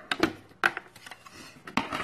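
Several sharp, scattered clicks and knocks of hard plastic as a digital insulation tester's case and its snap-on protective cover are handled.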